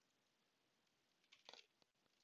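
Near silence, with a brief cluster of faint computer keyboard keystrokes about one and a half seconds in.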